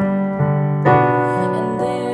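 Piano accompaniment playing sustained chords, with new notes struck about half a second and about a second in.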